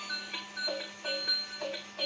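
Battery-powered Spider-Man bubble-blower toy playing its tinny electronic tune, a quick repeating run of beeping notes, over a steady low hum.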